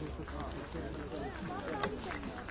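Several people talking at once, overlapping voices over a low steady hum.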